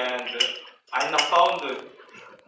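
A man's voice talking into a handheld microphone, in two short phrases.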